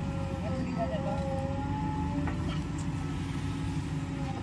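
JCB 3DX backhoe loader's diesel engine running under working load, a steady low rumble with a steady hydraulic whine above it as the machine swings from the loaded trolley to the trench. A few light metallic clicks from the machine's linkage.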